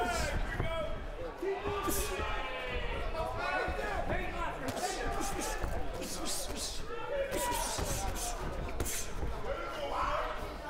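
Live ringside sound of a boxing bout: voices shouting from the crowd and corners over a steady hall murmur, with several sharp impacts of punches landing and feet on the ring canvas.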